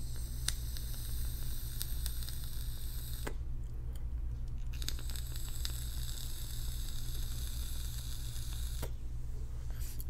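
Long draws on an e-cigarette tube mod with a cartomizer: a soft hiss of air pulled through the heated coil, in two stretches of about three and four seconds, each ending with a click. A steady low hum runs underneath.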